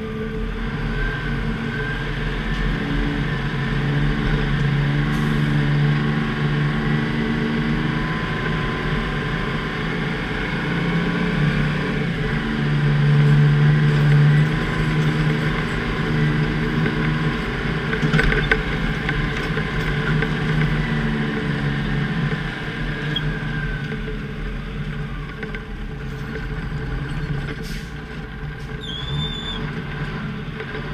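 Plow truck's Detroit diesel engine running under load, its pitch rising and falling with the revs, loudest about halfway through.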